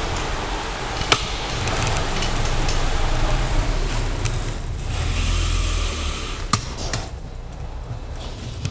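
Caloi 10 road bike rolling over a concrete floor, heard from an action camera mounted on the bike: a steady rushing of tyre and wind noise with a low rumble. There are two sharp knocks, about a second in and again late on.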